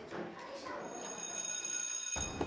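An electric school bell ringing, a steady high-pitched ring that starts about a second in over a faint murmur of voices.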